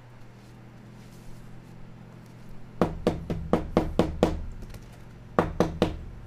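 Sharp knocks on a hard surface: a quick run of about seven, roughly five a second, then three more near the end.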